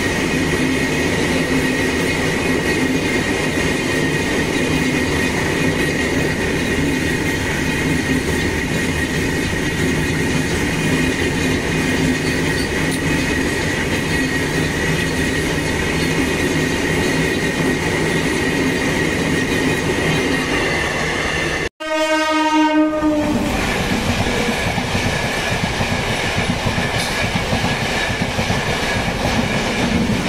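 Freight train of open box wagons rolling past close by: a steady rumble of wheels on rail with a high steady tone over it. After a sudden cut about 22 seconds in, a train horn sounds for about a second and a half, followed by more steady train noise.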